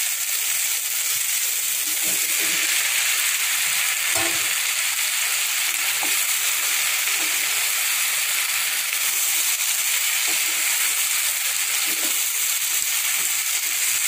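Chopped onion, tomato and capsicum frying in oil in a non-stick pan with a steady sizzle. A wooden spatula stirring them makes a few faint scrapes.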